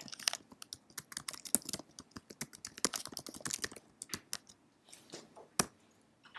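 Typing on a computer keyboard: a quick, irregular run of key clicks, ending with one harder key press near the end.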